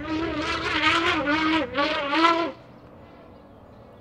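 African bull elephant trumpeting: a loud, wavering blast of about two and a half seconds with a short break near the end, then it cuts off.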